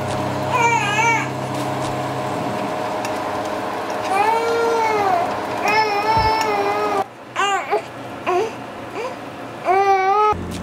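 A baby crying in a series of wails that rise and fall in pitch, the cries coming shorter and choppier in the last few seconds.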